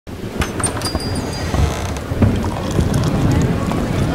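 Busy ambient noise: a steady low rumble with scattered sharp clicks and clinks, and a brief high whistle-like tone in the first second and a half.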